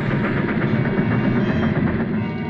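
Speeding steam locomotive: fast, steady chugging and wheel clatter in a rapid, even rhythm.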